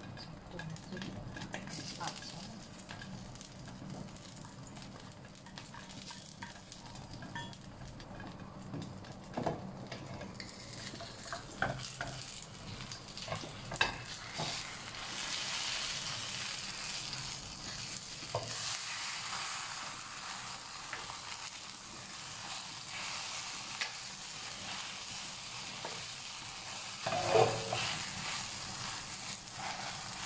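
Egg and long-bean omelette frying in oil in a stainless steel pan: a steady sizzle that grows louder about a third of the way in. A wooden spatula scrapes the pan and knocks against it now and then, the loudest knock near the end.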